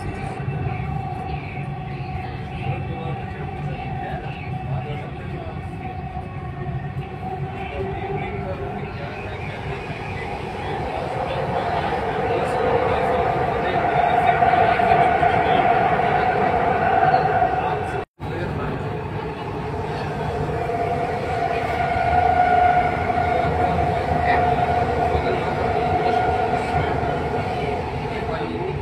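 Dubai Metro train running at speed, heard from inside the carriage: a steady rumble with a whine that swells louder about halfway through and again later. The sound cuts out for an instant about two-thirds of the way in.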